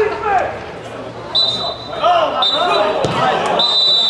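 Referee's whistle blown three times, two short blasts and then a long one that runs on: the full-time whistle ending the match. Voices call out under it.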